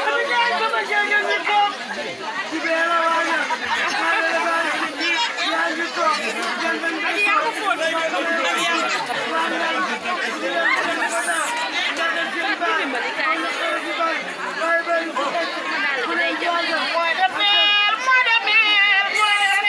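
Women's voices amplified through handheld megaphones, talking over the chatter of a crowd.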